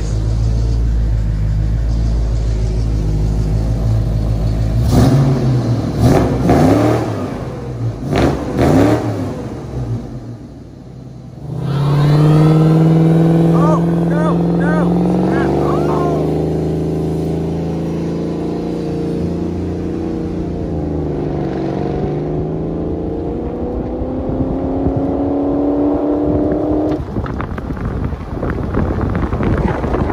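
V8 car engine running steadily for a few seconds, then revved several times, then after a short lull pulling hard with its pitch climbing slowly for about fifteen seconds, with a few short chirps early in the pull.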